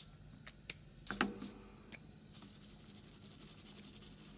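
Washable felt-tip marker scribbling on a sheet of aluminium foil: a faint scratchy rubbing with a few light clicks and crinkles of the foil in the first second or so, then steadier scratching.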